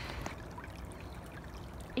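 Faint, steady outdoor background noise in a snowy pine forest, with no clear single event.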